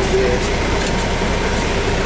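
Semi truck's diesel engine idling, a steady low rumble with an even hiss, heard from inside the cab.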